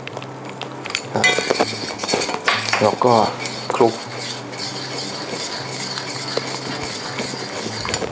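A metal spoon tapping chopped peanuts out of a small steel bowl, then scraping and clinking around a stainless steel frying pan as it stirs them into a thick sauce.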